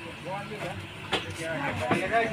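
Faint voices talking in the background over a steady low hum, with two brief clicks, one about a second in and one near the end.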